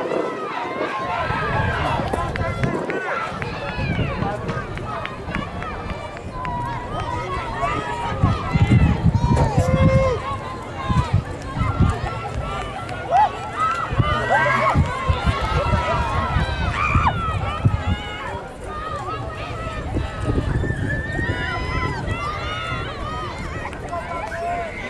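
Indistinct chatter of many spectators talking over one another, with no single voice standing out.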